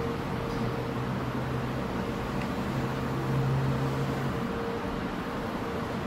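Steady hiss-like background noise with a faint low hum that grows a little louder for about a second past the midpoint.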